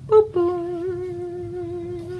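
A woman humming two notes, a brief higher note and then a long held lower one with a slight waver, like a sung "ta-da".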